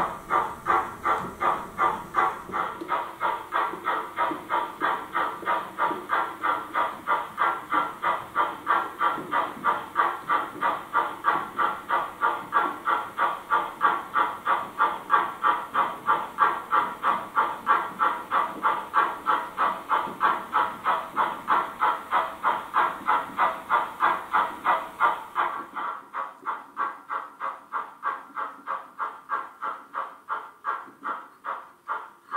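Sound decoder of a small H0 model steam tank locomotive playing a steady steam chuff through its small speaker, about three beats a second. The chuffing turns quieter and duller a few seconds before the end.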